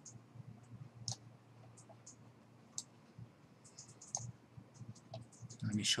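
Faint, irregular clicks of a computer mouse, a few scattered ticks each second, over a low steady hum.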